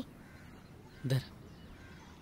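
A mostly quiet gap broken once, about a second in, by a single short harsh vocal sound, either a clipped shouted syllable or a bird's caw.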